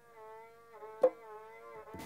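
A rebab, the Malay bowed spike fiddle, holds one long bowed note that sags slightly in pitch. A single drum stroke sounds about a second in.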